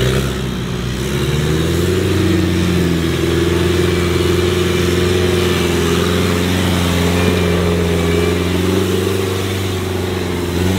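Off-road competition 4x4 buggy's engine revving up over the first couple of seconds, then holding high revs under load as it drives over loose dirt.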